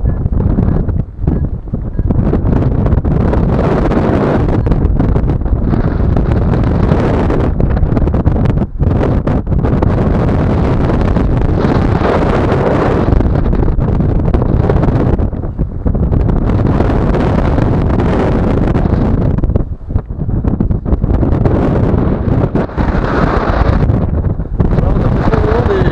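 Airflow buffeting the microphone of a camera on a tandem paraglider in flight: a loud, steady rush of wind with a few brief dips.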